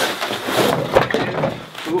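Packing material rustling and cardboard scraping as the wrapping is pulled out of a cardboard shipping box, with a sharp knock about halfway through.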